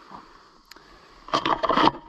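A faint click, then a short burst of scraping and rustling about a second and a half in.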